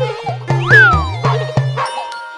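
Children's-song backing music with a steady beat, and a cartoon puppy's bark sound effect: one loud yelp that rises and falls sharply in pitch just before the middle.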